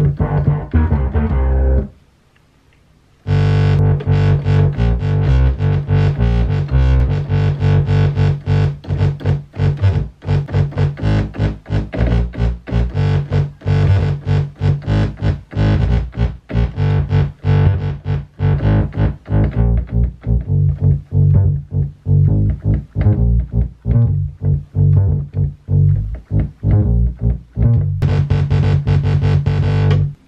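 Moog Little Phatty monophonic analog synthesizer playing an improvised bass line. A bass note stops about two seconds in, and after a short pause comes a long, fast run of short, punchy bass notes with a bright edge.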